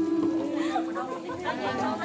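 Several people talking over one another, with one voice holding a long, steady sung note through most of the stretch.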